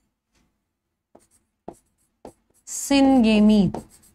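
Chalk writing on a blackboard: a few short taps and scrapes, about half a second apart, as a word is chalked up. A woman's voice speaks briefly near the end.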